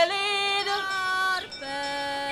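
A young woman street seller singing a song about poor sinners, unaccompanied, in long held notes. The singing breaks briefly about one and a half seconds in and picks up again on a lower note.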